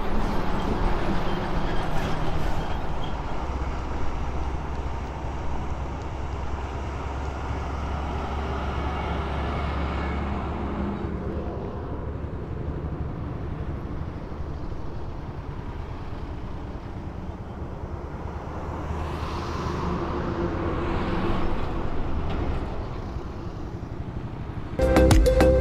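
Motorcycle riding on a highway: its engine runs steadily under wind and road noise, getting quieter over the first few seconds as the bike slows. A louder swell of passing traffic comes about 19 to 22 seconds in.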